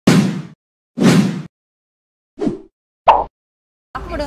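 Sound effects of an animated intro graphic: four short hits with silence between them, two larger ones about a second apart at the start, then two smaller, shorter ones later on.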